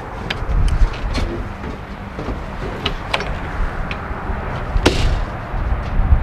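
Wind buffeting the microphone with a steady low rumble. Over it, a travel trailer's entry door and screen-door frame are pushed open, giving several sharp clicks and knocks; the loudest comes about five seconds in.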